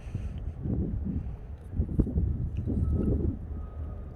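Wind buffeting the microphone, a low rumble that swells in gusts, with one sharp click about two seconds in as a stiff board-book page is turned.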